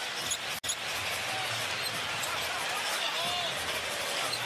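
Arena crowd noise during live basketball play, with a ball bouncing on the hardwood and a few faint sneaker squeaks. The sound drops out sharply for an instant less than a second in.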